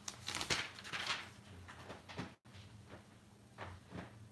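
Brief rustling and light clicking of handling noises over a steady low electrical hum, busiest in the first second and a half, with the sound cutting out for an instant about halfway through.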